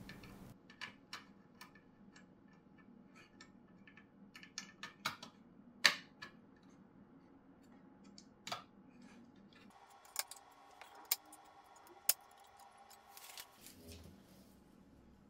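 Scattered small clicks and taps of plastic cable connectors and wires being handled and plugged into a circuit board, the sharpest click about six seconds in.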